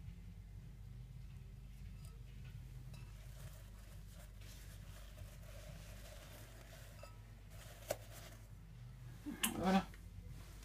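Paper towel burning in a small metal bin, lit with a disposable lighter: faint rustling and crackle over a low steady room hum. There is a single click about eight seconds in, then a brief louder jumble of knocks just before the end.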